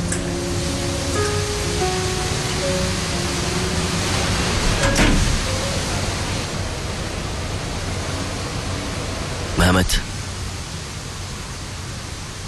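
Soft background score with a few sustained notes fading out within the first few seconds, leaving a steady hiss-like noise. A brief louder sound comes up shortly before the ten-second mark.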